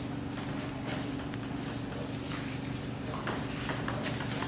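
Table tennis ball knocking on the table and paddles: a series of light, sharp taps, a little louder and quicker in the last second as a rally starts.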